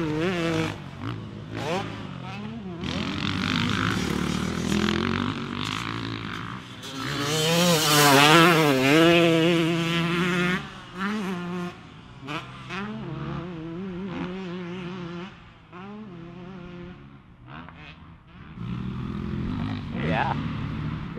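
Motocross dirt bike engines revving around a track, the pitch climbing and dropping again and again with throttle and gear changes. Loudest about eight seconds in.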